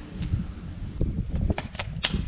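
Sneakered footsteps on concrete as a parkour athlete runs at a wall and kicks off it into a wall flip: a few sharp taps and scuffs in the second half, over a steady rumble of wind on the microphone.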